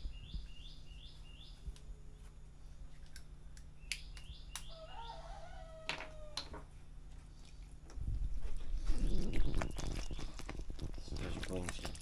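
A small bird chirping in quick runs of about five short high notes, once near the start and again about four seconds in. From about eight seconds in, louder clattering and voices take over.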